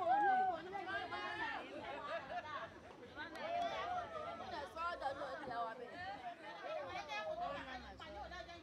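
A group of women chattering, several voices overlapping at once.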